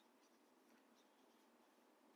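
Near silence, with faint squeaks of a marker writing on a whiteboard.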